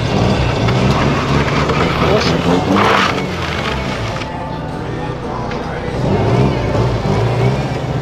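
Car engines running as modified cars pull up at low speed, with a steady deep drone and a brief sharp hissing burst about three seconds in.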